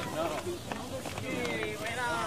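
Quiet speech: a man's low voice talking between louder lines of dialogue.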